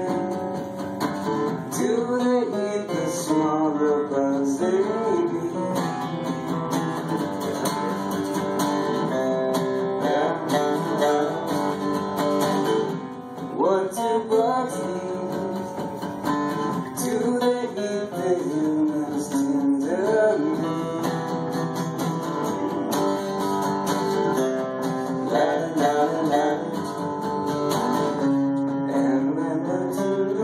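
Two acoustic guitars played together live, strummed and picked in a continuous tune.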